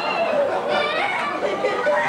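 Several children's high-pitched voices shouting over one another, with a small child crying, in a noisy family kitchen.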